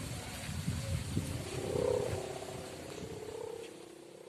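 Kite hummer (sendaren) on a large flying kite, vibrating in the wind with a pulsing buzzy drone that swells about two seconds in and then fades, with wind rumble on the microphone beneath it.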